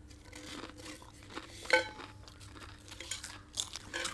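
A person chewing a crunchy snack close to the microphone, with scattered small crunches and a few short, sharp clicks.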